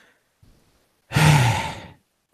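A man's long audible sigh about a second in: a breathy exhale with voice in it, falling in pitch.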